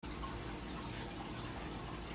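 Light corn syrup pouring in a steady stream from a measuring cup into a saucepan, a soft continuous liquid pour.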